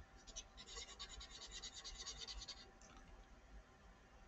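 A paper blending stump rubbed in small, quick circles over graphite on drawing paper: a faint, rapid run of scratches, about eight a second, that stops about two and a half seconds in.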